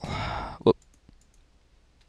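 A short breathy noise, then one sharp computer mouse click about two thirds of a second in, followed by a few faint ticks.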